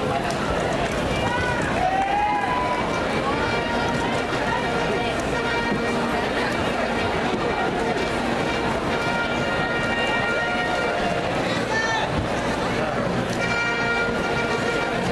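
A crowd of people talking at once in a large, echoing gymnasium. Music with long held notes plays beneath from about halfway through.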